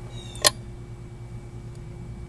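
A click about half a second in as the toggle switch on a 100-amp battery load tester is thrown to put the load on the battery, followed by a faint steady hum while the load is applied.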